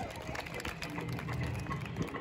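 An audience clapping: a round of applause from a small seated crowd.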